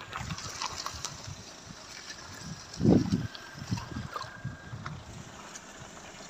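Car moving slowly through deep mud on a waterlogged dirt road, with low irregular rumbles and one louder thump about three seconds in.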